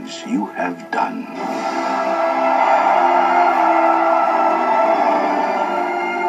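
Movie trailer soundtrack played through a TV speaker. Brief voices come in the first second or so, then music of held notes swells up, growing louder over a second or two and then holding steady.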